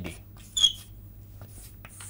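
Chalk writing on a blackboard: a few short scratchy strokes, with one brief high-pitched chalk squeak about half a second in.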